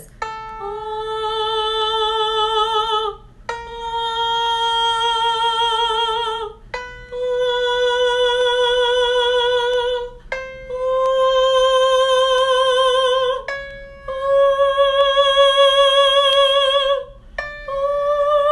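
A trained female voice sings a bel canto vocal exercise: six sustained vowel notes with vibrato, each held about three seconds with a short break between, stepping up the scale note by note. She is climbing into the second passaggio, where the voice turns over toward head voice.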